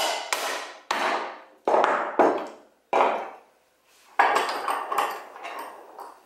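Claw hammer striking a 3D-printed plastic CNC foot bracket clamped in a metal bench vise, with about six sharp blows roughly a second apart. The bracket is being broken in a destructive strength test, and it breaks off.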